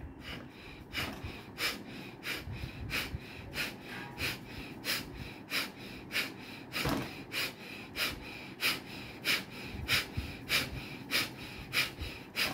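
A man's rapid, forceful breathing in a steady rhythm of about three sharp breaths a second, as in a bellows-style pranayama breathing exercise.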